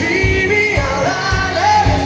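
Live pop-rock band playing, with a male lead vocal singing over drums and electric guitars.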